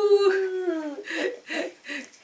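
A person's long, drawn-out vocal sound, falling slowly in pitch, ends about a second in. It is followed by a few short breathy sounds.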